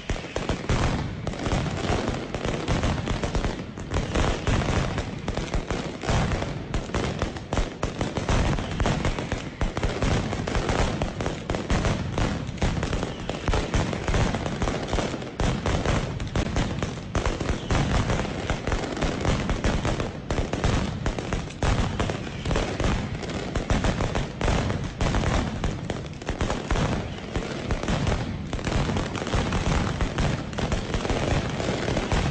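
Mascletà firecrackers going off in a dense, unbroken barrage of rapid bangs, like a continuous machine-gun rattle, very loud throughout.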